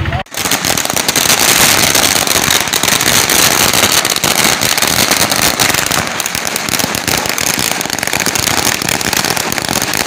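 A long string of firecrackers laid along the road going off in a rapid, unbroken run of sharp bangs and crackles that starts suddenly and keeps going.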